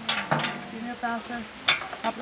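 Two sharp clacks, one right at the start and one near the end, from a metal-framed folding chair being handled, over a woman's voice.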